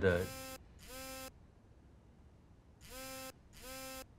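Smartphone vibrating on a wooden desk with an incoming call: two short buzzes in quick succession, a pause, then two more near the end.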